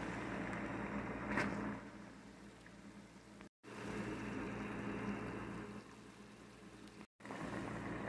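Water at a rolling boil in a saucepan with a block of instant ramen in it: a quiet, steady bubbling hiss over a low hum, with a short tick about a second and a half in. The sound drops out for a moment twice.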